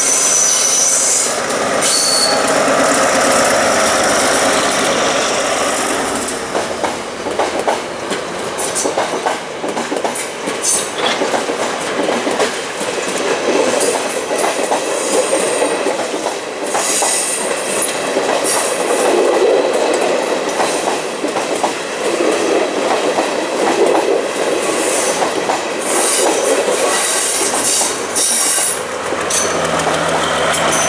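Sri Lanka Railways diesel power set rolling past close by on curved track: a steady rumble of wheels on rail with clicking over the rail joints, and high wheel squeal coming and going several times.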